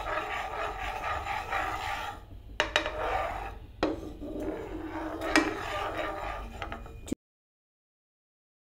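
A spatula scraping and stirring milk sauce around a metal frying pan: rasping scrapes in three stretches, with a few sharp knocks against the pan. The sound cuts off abruptly about seven seconds in.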